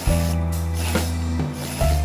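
Industrial sewing machine running, stitching fabric, over background music with sustained notes.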